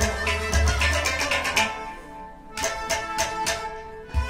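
Instrumental passage of traditional folk music: a quick run of sharp percussion strokes over sustained melody instruments and a steady low drone, with a short lull about two seconds in.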